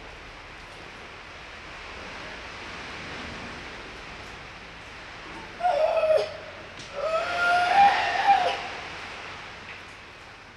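Two drawn-out pitched calls over a steady hiss, the first short and the second longer with a rising-then-falling pitch.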